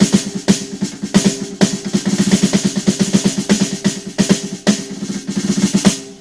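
Triggered electronic snare drum sound from a drum module, played as fast rolls and single strokes with sticks on a converted snare drum fitted with a clamp-on rim trigger. The strokes come thick and fast, rising and falling in loudness. The player judges that this trigger does not give the dynamics.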